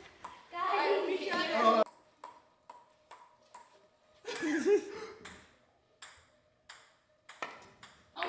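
Ping-pong ball bounced on a paddle, giving short sharp pings about two a second. They come in two runs, with voices in between.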